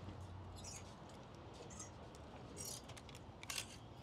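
Wire clothes hangers scraping and clicking along a metal rack as T-shirts are pushed aside, a few short sharp scrapes with the loudest near the end.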